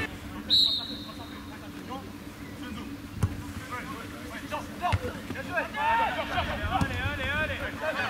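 A referee's whistle blows once, short and high, about half a second in, followed by two sharp thumps of a football being kicked around three and five seconds. Several voices call out across the pitch near the end.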